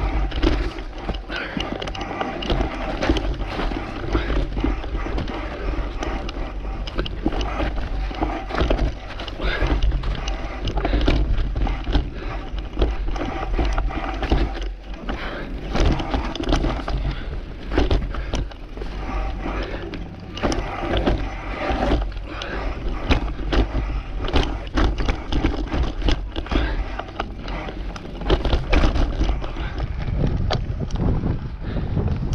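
Mountain bike riding down a dirt woodland trail: tyre noise on the dirt with frequent knocks and rattles from the bike over bumps, and low wind rumble on the microphone.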